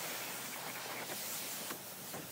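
Pressure washer spray hitting a plastic floor mat, a steady hiss of water, rinsing off rust remover.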